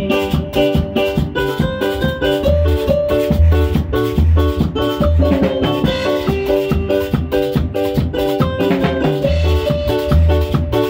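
A live band playing an instrumental passage: electric keyboard over bass guitar and drum kit, with a steady dance beat and no singing.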